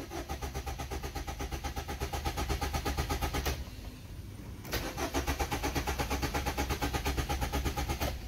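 Maruti Suzuki Ertiga diesel engine cranking on the starter with rapid, even pulses, in two tries of about three and a half seconds each with a second's pause between, never catching. It won't start because its fuel has run out.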